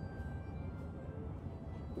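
Quiet background music with no other distinct sound.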